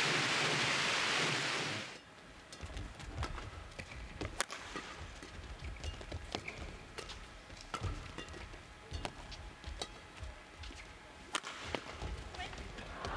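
Audience clapping that cuts off suddenly about two seconds in. Then a badminton rally in a quiet hall: a string of sharp racket strikes on the shuttlecock, with the hardest hits about four and a half and eleven and a half seconds in.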